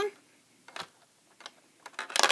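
A few light clicks, about half a second apart, of a nickel and plastic Lego bricks being handled as the coin is brought to a Lego candy machine's coin slot.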